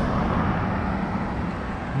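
Steady low rumble of street traffic, easing slightly toward the end.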